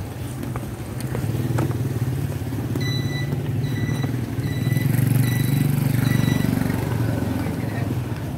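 A motor vehicle engine running close by, growing louder for a couple of seconds past the middle, with five short electronic beeps in a row, about three-quarters of a second apart.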